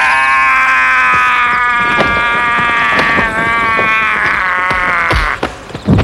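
A man's long, loud cry, held almost steady on one pitch for about five seconds, with a few sharp blows heard over it and a heavy hit near the end.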